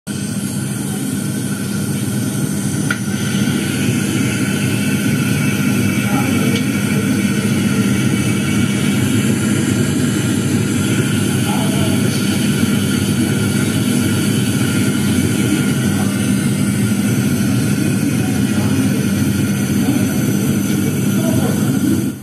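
A loud, steady hum and rushing noise with a constant low drone that runs unchanged, with no clear speech over it.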